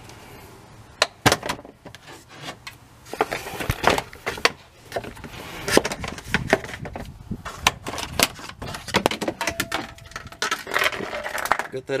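Ram 1500's plastic fan shroud and its clips being worked loose by hand: irregular plastic clicks, knocks and rattles.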